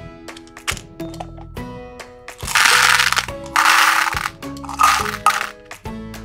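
Hard-shelled candy-coated chocolates pouring and rattling out of a plastic jar into a plastic toy bathtub in two loud runs, about two and a half and three and a half seconds in, with a short third one near the end. Background music plays throughout.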